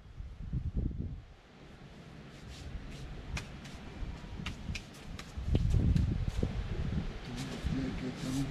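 Wind buffeting the microphone in irregular low gusts, strongest a little past the middle, with scattered sharp clicks in between. A person's voice starts near the end.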